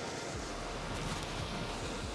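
Steady wash of ocean surf breaking on a beach, with a low wind rumble on the microphone starting about half a second in.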